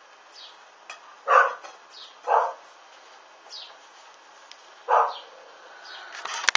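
A dog barks three times, short single barks spread over a few seconds, with faint high chirps repeating in between.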